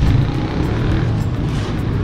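Steady low rumble of a motor vehicle running, with music playing over it.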